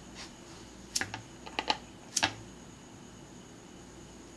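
A handful of short, sharp clicks, some in quick pairs, from a hand-held lighter being flicked while the bottle is being set alight.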